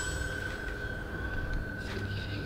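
A steady high-pitched tone holds at one pitch throughout, over a low rumble.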